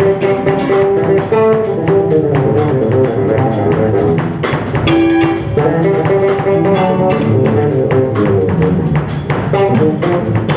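Live instrumental jazz-rock trio: electric guitar playing held, melodic lines over electric bass and a drum kit, with quick, steady cymbal strokes keeping time.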